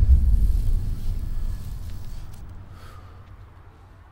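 A deep, low boom that hits suddenly and rumbles away over about three seconds, a cinematic sound effect from a TV episode's soundtrack.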